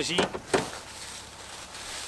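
A single sharp knock, then footsteps shuffling through dry fallen leaves with a steady rustle.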